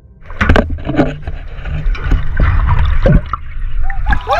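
Seawater sloshing and splashing around a camera at the surface of a shark cage, with a deep rushing as the camera dips under. Several sharp splashes stand out, the loudest about half a second in.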